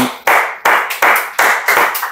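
Steady hand clapping, about three claps a second.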